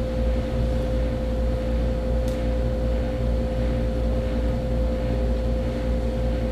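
Window air conditioner running: a steady low hum with one constant mid-pitched tone above it.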